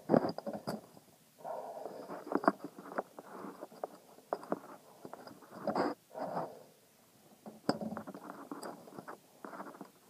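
Handling noise from a hand rubbing and knocking against a phone's microphone: irregular rustling and scraping with sharp clicks.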